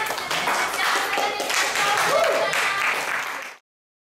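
A group of people clapping, with voices calling out among the claps; it cuts off abruptly about three and a half seconds in.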